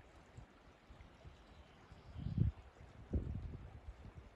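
Faint outdoor ambience beside a loch: a soft, even wash, with two brief low rumbles of wind on the microphone about two and three seconds in.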